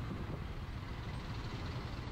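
Motorcycle moving slowly in heavy traffic: a steady low engine and road rumble from the bike and the trucks and cars around it, with no distinct events.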